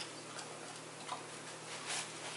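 A dog chewing and mouthing a torn padded paper envelope: a few faint, separate paper crackles and jaw clicks, the sharpest near the end.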